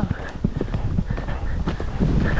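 Hoofbeats of a ridden horse moving at speed on a soft dirt track: a quick, uneven run of dull thuds.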